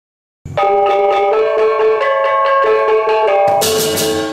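Silence for about half a second, then Balinese gamelan music: a fast run of ringing struck metallophone notes, with a bright crash near the end.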